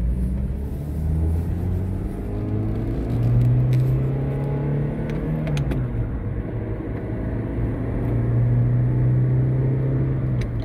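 Pontiac Vibe GT's 2ZZ-GE inline-four and road noise heard from inside the cabin while driving. The engine note rises and holds, drops about six seconds in, then holds steady again.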